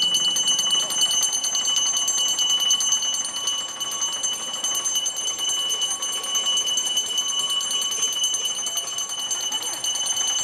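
A small metal hand bell rung rapidly and without a break, a steady bright ringing.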